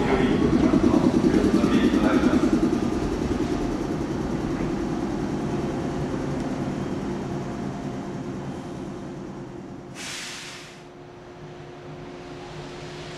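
Electric train running slowly along the platform and braking to a stop, its rolling sound fading away. Near the end comes a short hiss of compressed air from the brakes.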